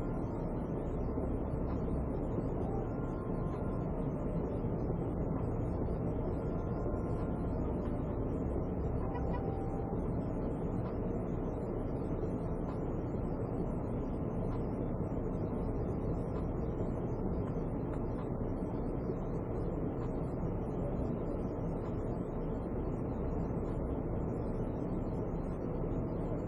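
Steady low rumble of a patrol car heard from inside its cabin, unbroken and even in level.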